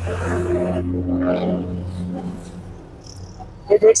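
A steady low motor hum that fades away over about three seconds, with speech returning near the end.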